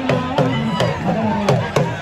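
Drumming of the kind that accompanies dambe boxing: sharp drum strikes a few times a second in an uneven rhythm, with voices and pitched tones sliding up and down over it.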